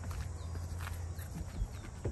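A few faint soft thuds of a German shepherd's paws as she runs in and onto a wooden deck, clearest near the end. Under them are a low steady rumble and short, high, falling chirps that repeat faintly.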